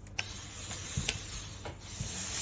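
Silver Star ES-94AL industrial steam iron giving off a steady hiss of steam as it works over fabric, with about four sharp clicks spread through.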